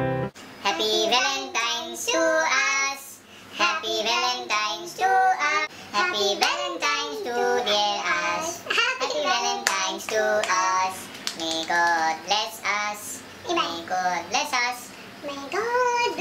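A high-pitched woman's voice singing unaccompanied in short, bending phrases. A background music track cuts off abruptly just as the singing starts.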